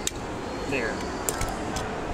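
Hard plastic parts of a Transformers Megatron action figure clicking as they are pressed and handled. There is one sharp click right at the start and two fainter ones in the second half.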